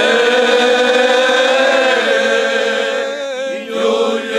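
Male choir singing cante alentejano, the Alentejo's unaccompanied group song, here a Cante aos Reis (Epiphany song): several voices hold slow, drawn-out notes together. The sound dips briefly near the end as the voices pause between phrases, then comes back in.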